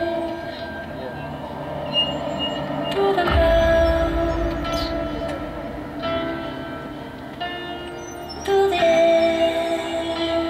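Marching band playing loud, long-held brass chords, with a deep low hit about three seconds in and the band swelling louder again near the end.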